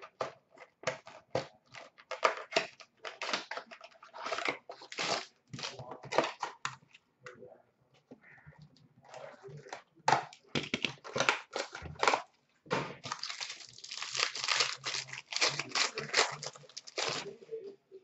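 Foil wrapper of a hockey trading card pack crinkling and tearing as it is ripped open and the cards handled: irregular crackles and rustles, easing off briefly midway before picking up again.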